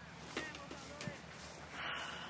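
Distant, indistinct voices of players calling on an open field, with two short knocks about a third of a second and a second in, over a steady low hum.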